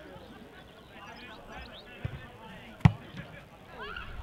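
A single sharp thud about three-quarters of the way through, over faint background voices.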